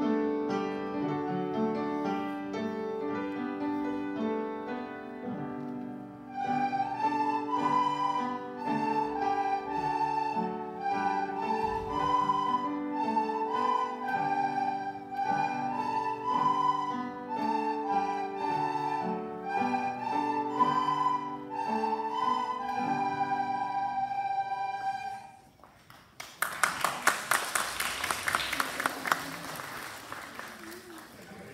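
A class of children playing plastic soprano recorders in unison over piano accompaniment: the piano plays alone for about six seconds before the recorder melody comes in. The song stops about 25 seconds in, and after a brief pause applause breaks out.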